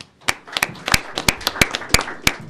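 Audience applauding, with individual hand claps standing out, beginning about a third of a second in.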